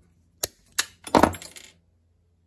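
Small steel pin clinking against a metal vise: three sharp clinks about a third of a second apart, the third loudest with a short ring.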